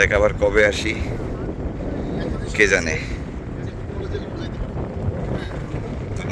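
Steady low rumble of a trawler underway, its engine mixed with wind on the microphone. A person's voice is heard briefly twice, at the very start and about two and a half seconds in.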